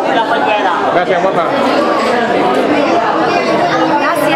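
Several people talking at once: loud, overlapping chatter with no single voice standing out.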